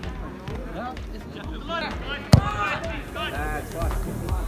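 Voices shouting and calling across a football pitch, with one sharp thump a little over two seconds in, the loudest sound.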